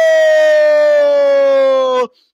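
A football commentator's drawn-out goal cry, one long loud held "gooool" note that sinks slowly in pitch and breaks off at the end.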